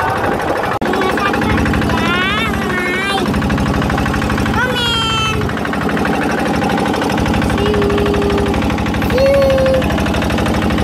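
Small motorboat's engine running steadily under way, a rapid even pulsing that does not let up, with short voice sounds from the passengers over it.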